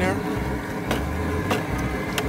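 Wooden paddle stirring the seasoning water in an aluminium crawfish boil pot, with two sharp knocks of the paddle against the perforated basket, over a steady low rumble.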